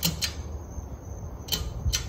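A ceiling fan's pull-chain switch clicking: two quick clicks at the start and two more in the second half, over a low steady hum.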